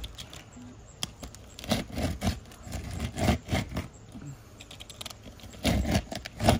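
Utility knife being drawn firmly across asphalt shingles: a run of short scraping strokes at irregular intervals, bunched in the middle and again near the end.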